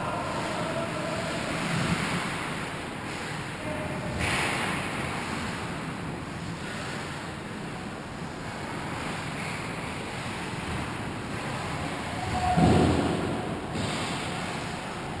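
Steady noisy ambience of an indoor ice hockey rink during play, with a louder burst of noise near the end.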